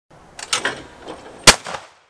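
A single shotgun shot about one and a half seconds in, sharp and loud, with a short echo. It is the loudest sound here. A few softer bangs come in the first second before it.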